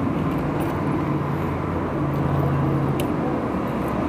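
Steady low engine hum of a motor vehicle close by, with a faint click about half a second in and another at three seconds.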